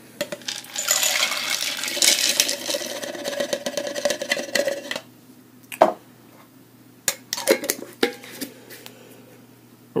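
Alcohol-soaked wood pellets poured from a plastic measuring cup into a glass mason jar: a dense clatter of pellets against glass for about five seconds. A few separate knocks follow as the cup and jar are handled and set down.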